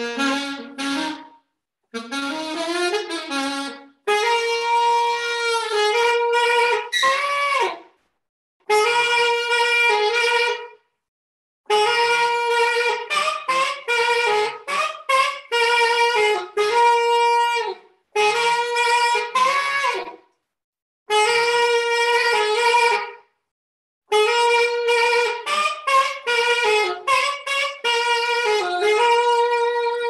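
Unaccompanied alto saxophone playing a melody in phrases of long held notes, with scoops and falls in pitch at the ends of phrases. Between phrases the sound drops to dead silence, as in a video call's audio, and the last note is held and fades out near the end.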